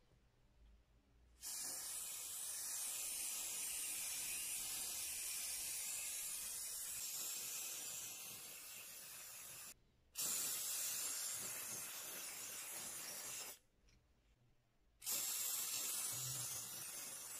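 Aerosol spray can hissing in bursts: a long spray of about eight seconds starting a second and a half in, a brief break, a second spray of a few seconds, then a third starting near the end.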